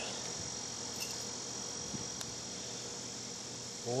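A steady, high-pitched drone of insects, unbroken throughout, with a few faint clicks.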